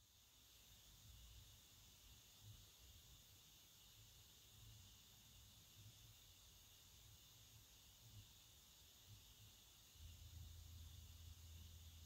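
Near silence, with only a faint steady hiss.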